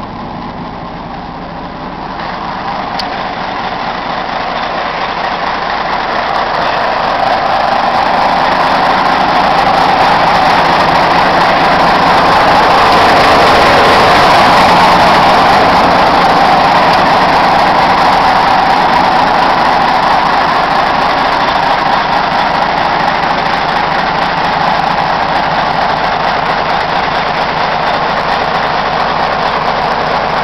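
Caterpillar 980C wheel loader's diesel engine idling steadily. It grows louder over the first several seconds as the microphone comes close to the engine compartment, then eases off a little.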